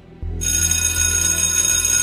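A bell starts ringing about half a second in and keeps up a loud, steady, high ring, over low background music.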